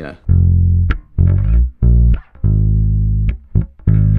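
Ibanez electric bass guitar played fingerstyle: a short phrase of about five sustained low notes with brief gaps between them.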